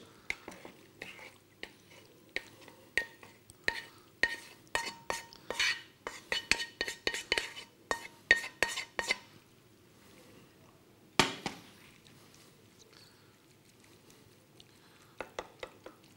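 A metal spoon clinking and scraping against a glass baking dish as a chard and chicken filling is spooned and spread over potato slices: a quick run of light taps and clinks, some briefly ringing, for about nine seconds. This is followed by a single louder knock a couple of seconds later and a few light taps near the end.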